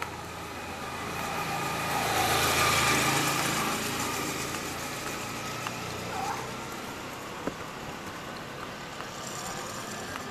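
A road vehicle passing close by on the street, its engine and tyre noise swelling to a peak about three seconds in, then fading away.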